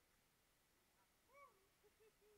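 Near silence: faint outdoor ambience, with one faint, brief rising-and-falling call about one and a half seconds in.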